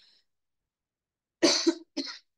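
A woman coughing twice in quick succession, a longer cough and then a short one, from a throat irritation that keeps making her cough.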